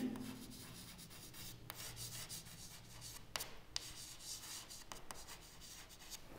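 Chalk writing on a chalkboard: faint scratching strokes, with a few sharper taps as the chalk meets the board.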